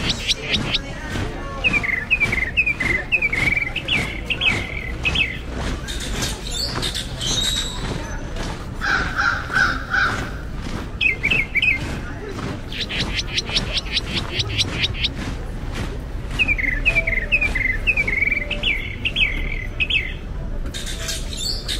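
A songbird singing in two bouts: a rapid high trill followed by a string of short falling chirps, repeated after a pause. Under it, regular footfalls on pavement, about two a second, and a low steady street background.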